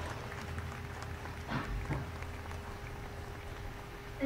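Faint outdoor background noise: a low rumble with a steady faint hum, and a brief faint sound about a second and a half in.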